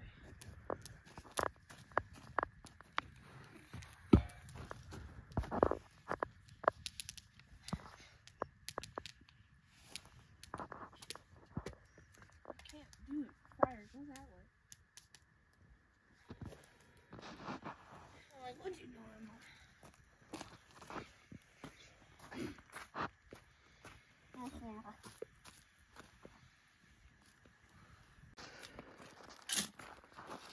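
Faint, irregular clicks and crackles with a few soft thumps, and brief snatches of distant voices now and then.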